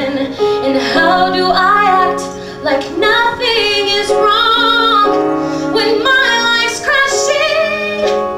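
A woman singing a slow ballad live, with piano and a small string section of violins, violas and cellos. Her held notes waver with vibrato over sustained low notes from the accompaniment.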